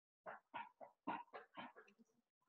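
A dog barking in a quick string of about seven short, faint barks, roughly four a second.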